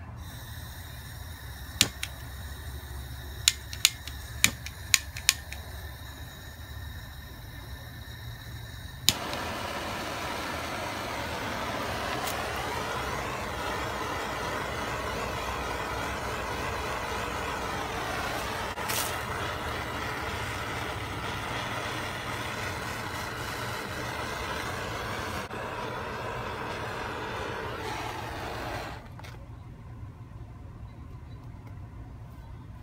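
Handheld gas torch: a run of sharp igniter clicks, then from about nine seconds in the flame hisses steadily for some twenty seconds while it singes the loose fibres off jute twine, and cuts off near the end. A low machinery rumble runs underneath.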